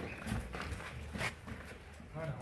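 A few scattered knocks and scuffs of cattle hooves and sandalled footsteps on a concrete yard as dairy cows are led about on halters.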